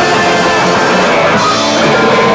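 A rock band playing live in a small room: electric guitar through an amplifier, electric bass and a drum kit with cymbals. The cymbal wash drops back about one and a half seconds in.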